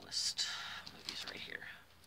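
A sheet of paper rustling as it is handled and waved close to the microphone, loudest in the first half second.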